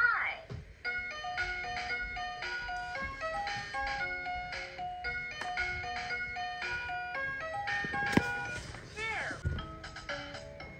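Little Artisan Game Workshop electronic toy calling out "Five!" in a recorded voice, then playing a simple electronic tune of clean, steady beeping notes. A sharp knock about eight seconds in, and a short voice near the end.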